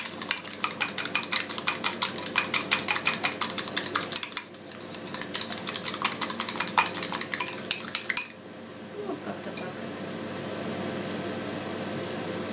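A fork beating an egg with salt in a ceramic bowl, its metal tines clicking rapidly against the bowl at about seven strokes a second. The beating pauses briefly a little after four seconds, then stops about eight seconds in.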